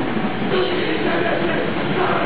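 Live hardcore band playing at full volume: distorted guitar, bass and drums merge into a dense, unbroken wall of noise on a close, overloaded recording.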